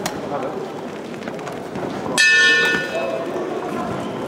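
Boxing ring bell struck once about two seconds in, ringing out and fading within a second: the signal to start the round. Murmur and voices of the hall go on underneath.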